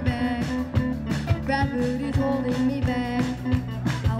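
Live amplified rock band playing a steady beat: drum kit, bass guitar, electric guitar and keyboard, with a melody line over the top.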